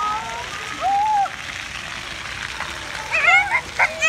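Splash-pad water spraying and splashing as a steady hiss behind children's voices.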